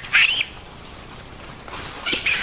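An olive baboon gives one short, high-pitched call right at the start, then only faint background hiss.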